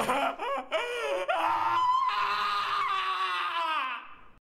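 A young man's voice crying out wordlessly: a few short, broken sobbing cries, then one long drawn-out wail that sinks a little in pitch and fades at the end.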